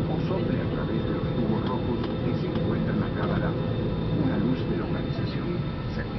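Steady low hum of an airliner cabin on the ground, engines and air system running, with a faint steady tone, under muffled passenger voices.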